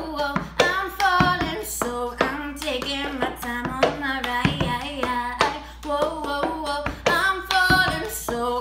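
A woman singing a pop melody while playing the cup-song rhythm: claps, hand slaps on the table and knocks of a red plastic party cup against the tabletop, several sharp hits a second under the voice.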